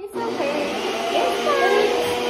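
Infant fussing and starting to cry as its face is wiped, in long, wavering wails.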